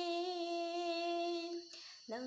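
A woman singing unaccompanied, holding one long steady note for nearly two seconds, then taking a short breath near the end.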